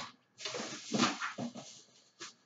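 Rustling and handling noise, ragged and uneven, as a person leans down and rummages for an item among shopping bags.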